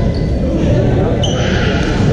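Badminton play in a large echoing sports hall: a sneaker squeaks on the court floor about a second in, and a sharp knock comes near the end, over a steady babble of voices and play from the other courts.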